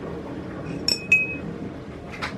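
Two quick clinks of a metal teaspoon against a ceramic mug about a second in, the second ringing on briefly.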